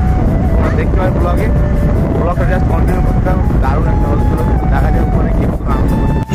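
Steady low rumble of a moving vehicle with a song's melody playing over it.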